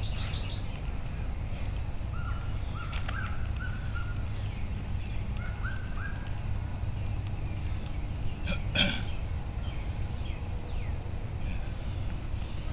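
Outdoor ambience of birds calling, with a few short rising chirps, over a steady low background rumble. A brief louder sound stands out about nine seconds in.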